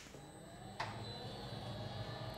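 The protective door of a radiation isolation room closing: a faint, steady mechanical hum with a soft click just under a second in.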